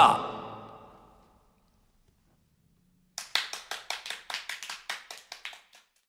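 The last strummed chord of an acoustic guitar rings out and fades over about the first second. After a pause, brief hand clapping of about two and a half seconds follows, a quick irregular run of claps.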